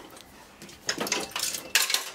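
Metal parts of a dismantled industrial motor drive clinking and clattering as they are handled and lifted. It is quiet for the first second, then there is a cluster of sharp clicks, loudest near the end.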